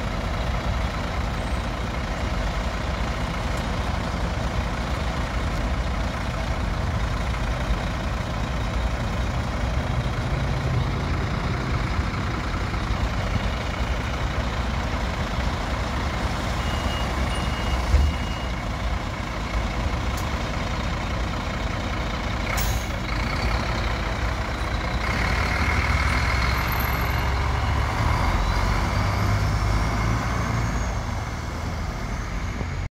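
City bus idling at a stop with its doors open, a steady engine sound. About 23 s in there is a short burst of sound, and from about 25 s the engine gets louder as the bus pulls away.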